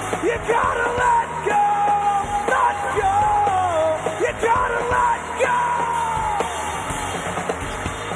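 Rock band playing live: electric guitars, bass and drums, with the lead singer singing long held notes that bend in pitch over the top.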